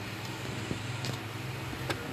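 Steady low background hum with faint hiss, broken by a few faint clicks, about one a second.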